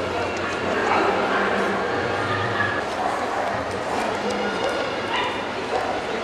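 A dog barking over the steady chatter of a crowd.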